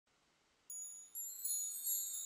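Very high, tinkling chimes opening the song's intro music: starting under a second in, about four notes come in one after another and ring on.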